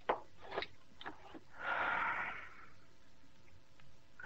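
Three soft knocks about half a second apart, then a breathy rush of noise lasting about a second, in a radio-drama scene.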